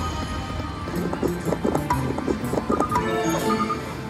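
Slot machine bonus-game music and reel sound effects: steady electronic tones, broken by a busy run of short effect sounds from about one to three seconds in as the reels spin and stop.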